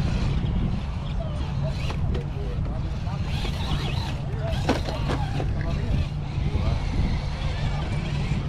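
Indistinct voices of several people talking, with no clear words, over a steady low rumble.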